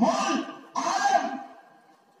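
Speech only: a man's voice in two loud phrases, stopping about a second and a half in.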